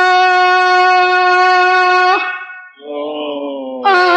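A male singer holds one long, steady note on the vowel "yā" in Arabic religious chant (madih), breaking off about two seconds in. A quieter, lower phrase follows, and a loud note starts again just before the end.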